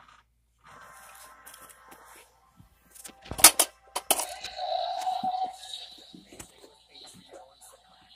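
Ghostbusters ghost trap prop going off: a short electronic buzz from its speaker, then a loud snap as the trap doors spring open about three and a half seconds in, followed by a sustained electronic tone.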